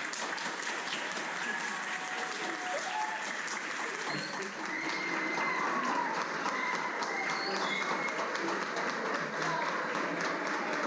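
Audience applauding steadily, with people's voices over the clapping.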